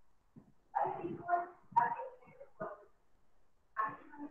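A dog barking several times in quick succession, starting about a second in.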